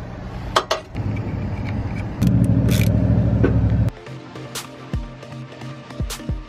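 A power tool loosening the winch's mounting bolts: it runs steadily from about a second in, gets louder from about two seconds in, and cuts off abruptly just before four seconds. A couple of metal clinks come before it.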